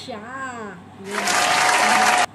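A woman's laughing voice, then about a second in a loud burst of applause that starts and stops abruptly, like an edited-in clapping sound effect.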